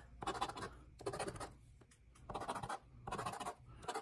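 A metal coin scratching the coating off a scratch-off lottery ticket, in a series of short strokes with brief pauses between them.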